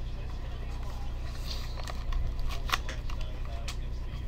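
A small cardboard box being handled and opened by hand: a few sharp clicks and scrapes of the cardboard flaps, the loudest near the end, over a steady low hum.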